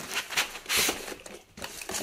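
Cardboard boxes scraping and rustling against each other as a tightly packed box is tugged free of its shipping carton, in a few short bursts, the loudest about a second in.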